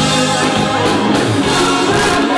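Live rock band playing loudly, with lead and backing vocals singing together.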